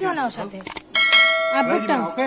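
A bell-like chime sounds suddenly about a second in and holds at several steady pitches for about a second, with voices before and around it.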